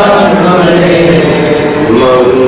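Devotional chanting: a voice holding long, sustained notes, sliding to a new pitch near the end.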